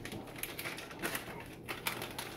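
Pan of meatballs, tomato sauce and beans crackling and sizzling on the stovetop: a steady run of small, irregular clicks as it heats.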